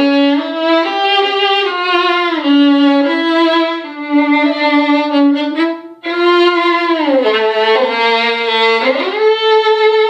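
Violin bowed on a gold-wound Pirastro Evah Pirazzi Gold G string: a slow, low melody of held notes joined by slides. There is a brief break about six seconds in, then a long slide down and back up.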